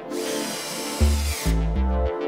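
Cordless drill-driver running for about a second and a half, driving a wood screw to fasten a fitting to a drawer front; its whine drops in pitch as it stops. Background music with a steady beat underneath.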